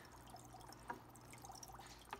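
Faint trickling and dripping of water from a fish tank's hang-on-back filter spilling back into the tank, with one clearer drip about a second in.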